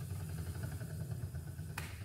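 Wooden treadle spinning wheel starting to turn as spinning begins, with a faint fast even ticking from the wheel and flyer over a low steady hum. There is a single click near the end.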